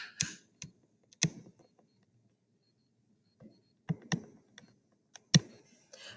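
Irregular, scattered clicks and taps of a stylus on a tablet screen during handwriting, about half a dozen spread over a few seconds with near silence between them.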